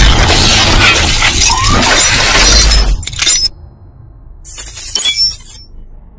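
Intro sound effect: a loud glass-shattering crash over deep bass that cuts off about three seconds in, followed a second later by a short burst of high tinkling, glittering sound.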